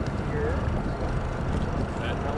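Steady low rumble of a small boat on open water, with faint voices talking.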